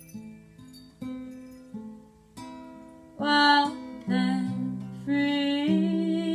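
Acoustic guitar tuned to 432 Hz, picked one note at a time and dying away between notes, then played louder from about three seconds in as a woman's wordless singing joins with long held notes.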